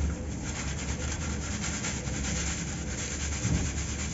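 Dry cement powder and small crumbs being shaken through a round metal sieve: a steady gritty scraping of grains across the mesh, with a dull knock about three and a half seconds in.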